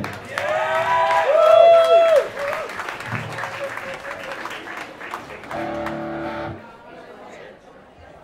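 Audience clapping and cheering, with a long whoop in the first two seconds, the applause then dying away; a single held electric guitar note sounds for about a second near the end and stops abruptly.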